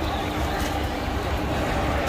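Steady background hum and low rumble of a busy indoor market hall, with faint distant voices.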